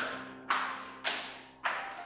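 Footsteps coming down a staircase, four sharp steps about half a second apart, each with a short echo, over a steady low music drone.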